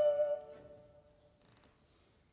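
A sustained note with vibrato from the baroque choir-and-orchestra performance breaks off in the first half-second and dies away in the church's reverberation, leaving near silence: a pause between sections of the music.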